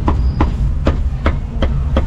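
Meat cleaver chopping roast pork on a thick round wooden chopping block: about six even chops, roughly two a second, over a steady low rumble.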